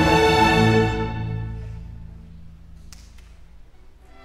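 Youth symphony orchestra playing a loud chord that breaks off about a second in and fades away in the hall's reverberation. A couple of faint clicks come near the end.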